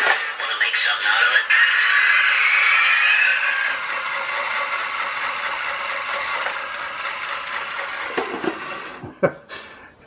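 Tasmanian Devil talking clock running its demo: the recorded Taz character voice and music play from its small speaker, loudest in the first few seconds, then a steady rushing sound that fades out. A few mechanical clicks and knocks come near the end as the pop-out arms and face close back.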